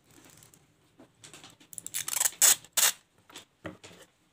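Clear plastic tape being handled by hand: a run of short, sharp crinkling rasps, with the three loudest close together about two to three seconds in and a couple of smaller ones after.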